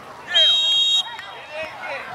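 A referee's whistle blown once, a single short steady blast of well under a second about a third of a second in, marking the play dead after a tackle. Shouting voices of players and spectators around it.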